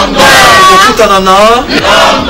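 Loud shouted vocal chant by voices calling together: one long drawn-out call whose pitch dips and rises back, then a shorter call near the end.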